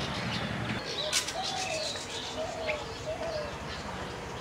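Short high chirps of a bronzed drongo fledgling begging, with a sharp click about a second in and four short low notes from another bird behind them.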